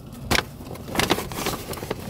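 Paper shopping bag being picked up and handled, with a few sharp crackles of the paper.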